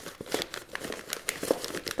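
Paper seed packets rustling and crinkling as they are shuffled and slid into a clear plastic storage box, with many small irregular ticks and taps.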